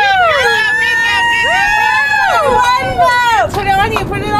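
Women's excited high-pitched shrieks and whoops: long drawn-out cries that rise and fall, several voices overlapping at first, breaking off briefly about three and a half seconds in.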